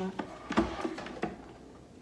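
A metal stand mixer being shifted across a countertop: a few short knocks, the loudest about half a second in, with light scraping between them.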